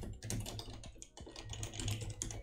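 Rapid typing on a computer keyboard: a quick, uneven run of keystroke clicks.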